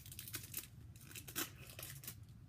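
Foil wrapper of a Pokémon TCG Steam Siege booster pack being torn open and crinkled by hand: a run of irregular sharp crackles, the loudest a little over a second in.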